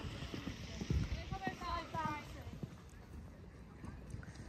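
Soft, irregular hoofbeats of a horse cantering on a sand arena surface, with a faint distant voice briefly about a second and a half in.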